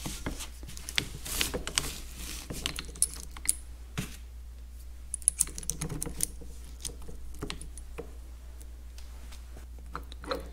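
Irregular small metallic clicks and taps as the steel links, pins and spider of a tractor live power clutch are fitted together by hand.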